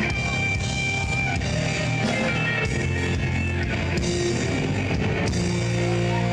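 Live band playing rock music, an electric guitar over bass and drums. About five seconds in, the band settles into long held notes.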